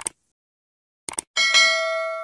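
Subscribe-button animation sound effect: a quick double mouse click at the start and another about a second in, then a bell notification chime of several steady ringing tones that slowly fades.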